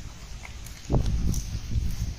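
Live fish flopping in a cast net on grass: irregular soft thumps and slaps, the loudest about a second in.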